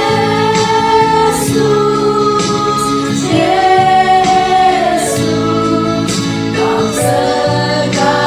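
A group of women singing a Christian worship song together, in long held notes.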